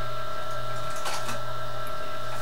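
Steady electrical hum with a high whine over a constant hiss, with a couple of brief soft rustles about a second in.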